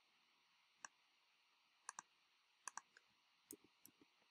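About seven faint computer mouse clicks, several in quick pairs, over near silence.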